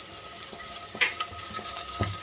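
Peeled hard-boiled eggs frying in a little oil in a non-stick pan, with a low, steady sizzle. A short sharp tap comes about a second in.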